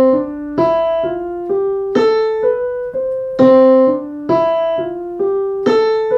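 Electronic keyboard with a piano sound playing a short melody of even eighth notes twice over, each bar accented in groups of two, three and three: 8/8 grouped 2+3+3 rather than plain 4/4.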